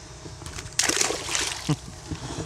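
A sheepshead released into the water beside a kayak, splashing hard for about a second as it kicks away, starting a little under a second in.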